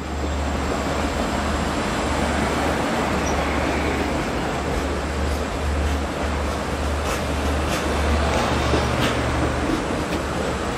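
Long Island Rail Road C3 bi-level passenger cars rolling past close by as the train pulls into the station: a steady rumble of steel wheels on the rails, with a deep low hum under it and a few light clicks near the end.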